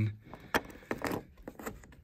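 A three-pin plastic wiring connector being handled and pushed onto a headlight's turn-signal socket: a few light plastic clicks and taps.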